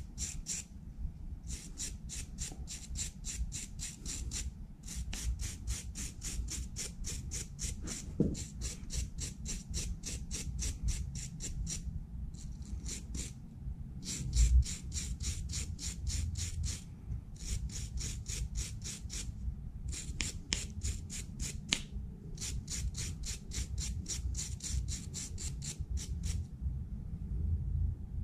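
A brush scrubbing a freshly cast aluminum skull pendant in quick back-and-forth strokes, about four a second, in runs of several seconds broken by short pauses.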